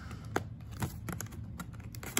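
Cardboard box being opened by hand: a handful of irregular sharp clicks and light scrapes of fingers and nails on the cardboard as the end flap is worked loose.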